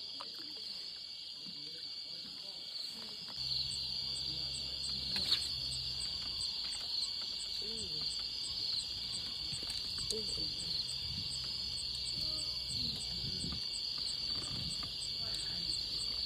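Steady high insect chorus, cricket-like, with a faint regular ticking running through it. A low hum joins about three seconds in, and there is one sharp click a couple of seconds later.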